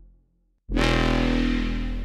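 Distorted foghorn-style bass synth notes from the Vital software synth, run through a preamp-style distortion, a compressor and a large reverb. The tail of one note fades to silence, then a new loud note hits about two-thirds of a second in and slowly dies away.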